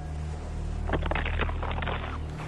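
Cannonball skipping across water: a quick run of crackling splashes starts about a second in, over a low steady rumble.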